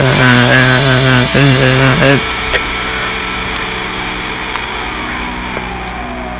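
A man's voice holds a long sung note with vibrato over an acoustic guitar, breaking off about two seconds in. A quieter, steady ringing guitar sound carries on after it.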